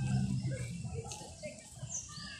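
Indistinct voices with no clear words, over a low steady hum that fades after about a second.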